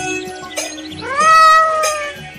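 A cartoon cat's long meow from a live-stream gift animation's sound effect, starting about a second in, rising in pitch and then held, over background music with a beat.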